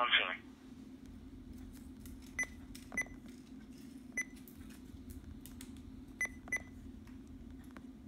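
Short key beeps from a RadioShack Pro-668 handheld scanner as its buttons are pressed to skip between recorded transmissions: five single beeps, two of them close together near the end, over a steady low hum.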